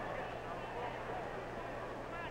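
Faint scattered voices from the arena crowd over the steady low hum and hiss of an old 16mm optical film soundtrack.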